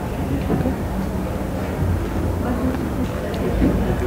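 Steady low rumble of background noise with a person quietly biting into and chewing a small fried mutton mince kebab, making soft low bumps and faint crunches.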